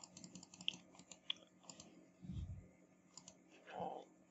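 Faint clicking of a computer mouse and keyboard, a quick run of ticks in the first half and a few more later, with a soft low thump about halfway through.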